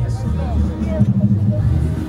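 Mercedes-Benz W108 280SE's straight-six engine idling steadily at low revs, with voices over it.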